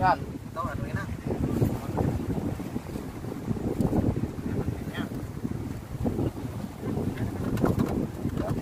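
Wind buffeting the microphone outdoors: a low, gusting rumble that rises and falls, with a few brief voice fragments in the first second.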